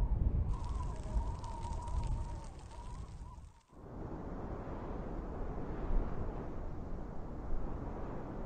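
Outdoor wind noise rumbling on the microphone, with a faint wavering high tone through the first three seconds. The sound drops out briefly about three and a half seconds in, then carries on as a steadier hiss.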